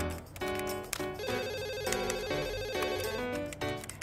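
Light background music with a telephone ringing over it: a rapid trilling ring that starts about a second in and lasts about two seconds.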